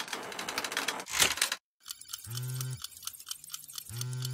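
Cartoon sound effects. A dense crackling, clicking rush swells about a second in and cuts off suddenly. After a short gap comes a run of quick clicks, with two short low tones about two seconds apart.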